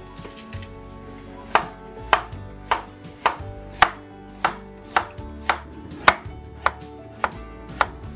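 Chef's knife slicing radishes on a wooden cutting board: about a dozen evenly spaced cuts, nearly two a second, starting about a second and a half in.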